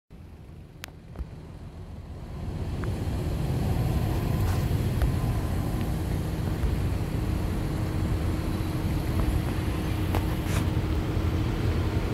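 Car engine idling, a steady low rumble that grows louder over the first few seconds and then holds level, with two light clicks near the start.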